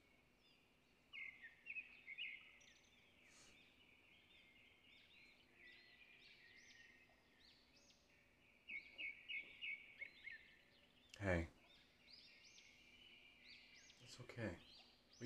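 Faint bird chirps in a quiet background ambience, coming in short runs of quick calls. About eleven seconds in, a single short sound from a man's voice.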